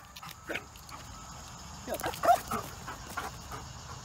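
Belgian Malinois giving a few short whines, most of them clustered about two seconds in.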